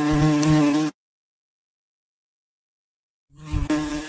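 A flying insect buzzing close by, a wavering droning buzz that cuts off abruptly about a second in, then returns briefly near the end.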